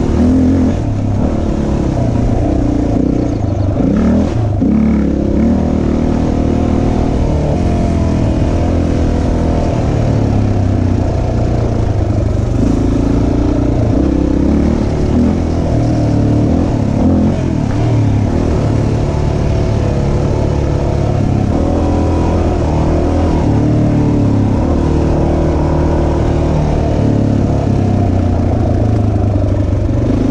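Honda XR dirt bike's single-cylinder four-stroke engine running under way on a trail, its pitch stepping up and down as the throttle and gears change.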